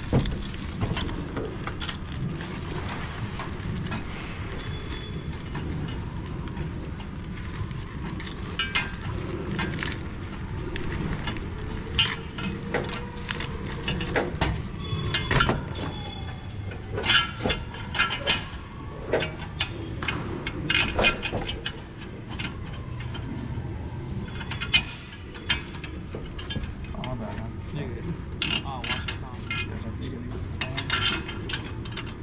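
Steel fan-mount bracket and bolts being handled and fitted against a ceiling mounting plate: irregular metal clinks and knocks, some with a short ringing, over a steady low rumble.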